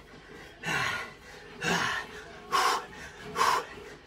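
A man breathing hard through the exertion of mountain climbers: four forceful breaths, roughly one every second.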